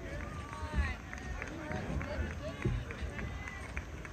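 A rake dragged through the sand of a long-jump pit to level it: a string of short scrapes, over background chatter.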